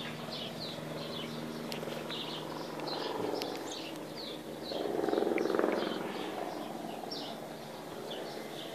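Small birds chirping repeatedly, short high calls a few times a second, over a low steady hum. A louder low buzzing swell rises and fades about five seconds in.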